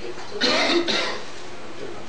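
A single cough, a short burst about half a second in.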